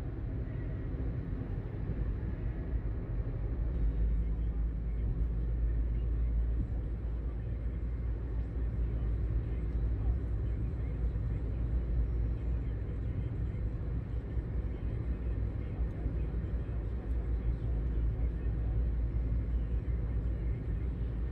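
Road noise inside a moving car: a steady low rumble of tyres and engine at cruising speed, a little louder from about four seconds in.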